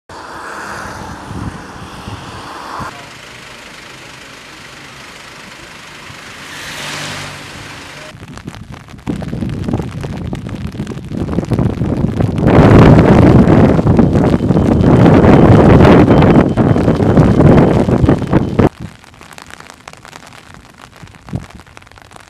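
Outdoor background noise over several cut-together shots. It is a moderate steady rush at first, swelling briefly around the middle of the first part. Then a loud, rough, unpitched rushing noise builds and cuts off suddenly a few seconds before the end.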